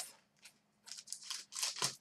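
Faint papery rustling and flicking of trading cards being handled and slid against one another, a handful of short crisp sounds in the second half.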